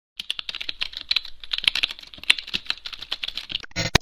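Logo intro sound effect: a rapid run of keyboard-typing clicks, ending near the end in a short buzzing digital glitch as the logo forms.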